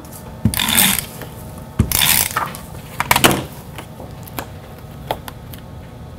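Glue Glider Pro tape runner drawn across paper in three short strokes in the first three seconds or so, followed by a few light clicks as the paper is handled and pressed down.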